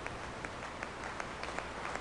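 Audience applauding: many hands clapping steadily together.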